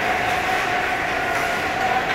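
Ice-rink ambience during a hockey game: a steady din of the arena with a faint even hum, and skate blades scraping the ice.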